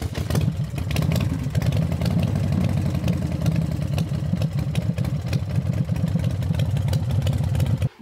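An engine idling steadily with an even low rumble, cutting off abruptly just before the end.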